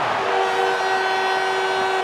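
Arena goal horn sounding a steady chord of several held notes, starting about a quarter second in, over a loud cheering crowd: the signal of a home-team goal.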